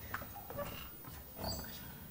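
Quiet hall room noise with a few scattered small knocks and brief squeaks, the loudest about one and a half seconds in.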